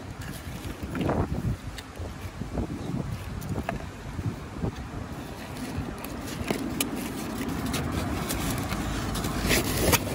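Low rumble of road traffic that swells toward the end as a vehicle passes. Over it come a few light clicks of a plastic fork against a polystyrene chip tray, and a louder handling noise at the very end as the tray is handled.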